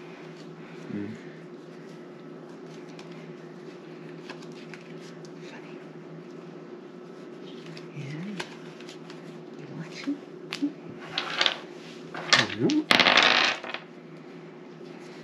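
Playing cards and dice handled on a wooden table, over a steady low hum: scattered light clicks, then a dense rattling burst about a second long near the end as dice land and a card is played.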